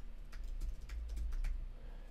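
Computer keyboard typing: a quick, uneven run of keystrokes, several a second, tapering off near the end.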